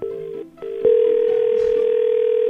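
Telephone ringing tone on an outgoing call: two short tones, then a loud steady ring tone lasting about two seconds with a slight wobble. The call is ringing and has not yet been answered.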